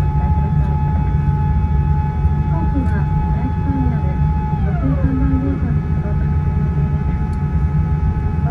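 Cabin noise inside a Boeing 787-9 rolling on the ground after landing: a steady low rumble with steady whining tones, one of which glides down in pitch about halfway through.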